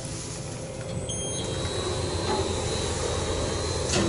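Electric passenger lift car travelling: a steady rumbling hum of the ride, with a short electronic beep about a second in, then a thin high whine for about two seconds.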